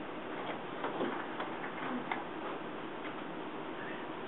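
Scattered, irregular light clicks of computer keyboards and mice over a steady background of room noise.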